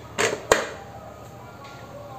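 Full-face motorcycle helmet visor flipped down: a quick swish, then a sharp click about half a second in as it snaps shut.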